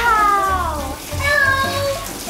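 A girl's long, high-pitched exclamation of surprise that slides down in pitch, followed by a second held note, over background music.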